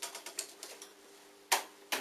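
Plastic DVD case being handled, a quick run of light clicks and rattles lasting about a second.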